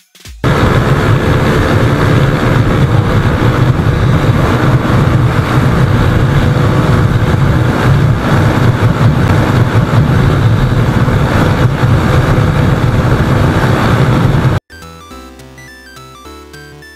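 Yamaha Sniper MX135's single-cylinder four-stroke engine held at full throttle near top speed, around 105–110 km/h and close to the redline, with heavy wind rush on the onboard camera's mic; loud and steady. It cuts off suddenly near the end, and electronic music takes over.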